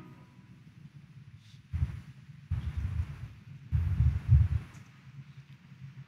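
Low, muffled thuds and rumbling in three short clusters, the loudest about four seconds in.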